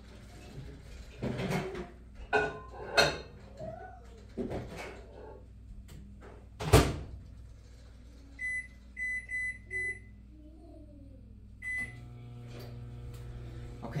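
Over-the-range microwave oven being loaded and started: a plate clatters inside and the door shuts with a knock, the keypad gives a quick run of short beeps as the time is entered, one more beep follows, and the microwave starts running with a steady hum.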